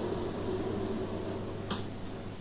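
Steady low hum of a glass-door display refrigerator running, with a single sharp click near the end as its door shuts.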